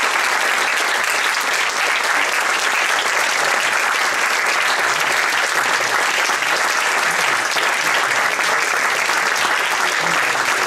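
Audience applauding, a steady dense clatter of many hands clapping.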